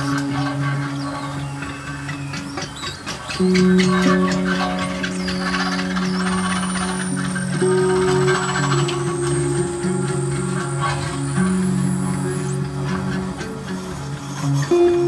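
A live band of electric guitar, electric bass and percussion plays held, droning low notes that swell louder about three and a half seconds in, over scattered clicks. A thin, high whine holds steady from about six seconds in and stops shortly before the end.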